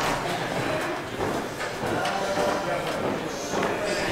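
Hall ambience of an indoor climbing centre: a steady murmur of voices echoing in the large room, with no single loud event.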